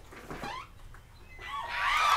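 A short, faint "mm" from a voice, then a quiet stretch before speech starts near the end.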